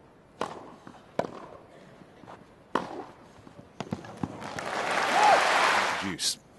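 Tennis ball struck back and forth in a rally, as sharp single pops a second or more apart. Near the end a crowd's noise swells up loudly.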